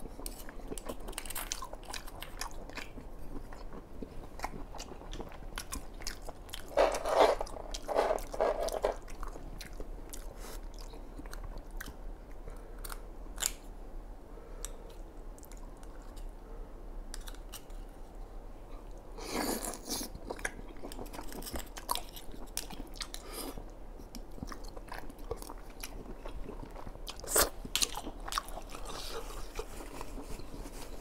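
Close-miked chewing of abalone in spicy sauce, with wet mouth clicks and smacking. The chewing is louder about seven seconds in and again near twenty seconds.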